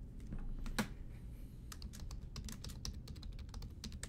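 Quick, irregular run of light clicks and taps, the loudest about a second in, from hands handling a hard plastic card holder and trading cards on a table.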